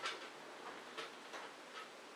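A few light, sharp clicks and taps at uneven intervals, the loudest right at the start, from small hard objects being handled and knocked against one another while something is fixed to a wall.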